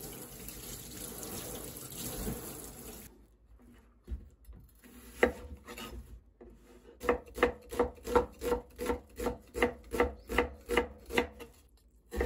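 Water running from a kitchen tap over an onion being rinsed in a stainless steel sink, stopping about three seconds in. Then a knife knocks a few times on a wooden cutting board, followed by steady chopping at about four strokes a second that ends near the end.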